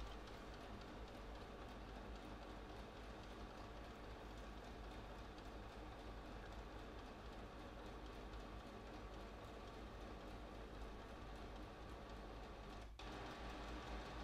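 HP DeskJet 3772's built-in sheet-feed scanner drawing a page through its rollers: a faint, steady mechanical running of the feed motor. It breaks off briefly near the end and resumes slightly louder.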